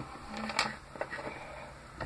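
Quiet room tone with two soft clicks, from small plastic toy figures being handled and set down.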